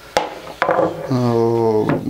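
A sharp knock of wood, a knife or hand against a wooden cutting board, just after the start. Then a man's drawn-out, level-pitched hesitation sound, like a held "ehh", lasting about a second until near the end.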